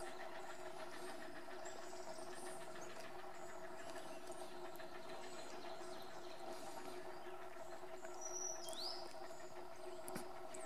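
A faint, steady low hum throughout, with a few small-bird chirps high above it. About eight and a half seconds in comes a short call that sweeps downward.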